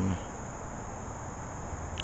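Crickets trilling steadily in a continuous high-pitched drone.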